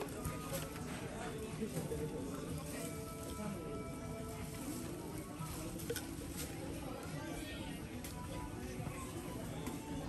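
Shop ambience: indistinct voices of other shoppers over music playing in the background, at a steady level throughout.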